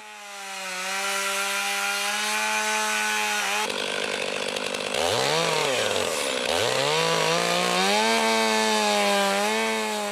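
Stihl chainsaw cutting a trough into the top of a pine stump, the start of an artificial rot hole for pine hoverfly larvae. The engine runs at a steady high pitch, and its note sags and recovers a few times around halfway as the chain works into the wood.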